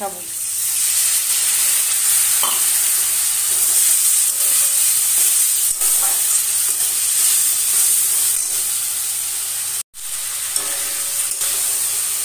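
Potato pieces and spice paste sizzling in hot oil in a steel kadai as the masala is sautéed, stirred and scraped with a steel spatula. The sizzle swells within the first second and breaks off for a moment near the end.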